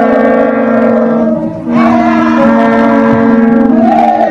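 A crowd of women chanting together in long, held notes, with a brief break about one and a half seconds in before the next held line.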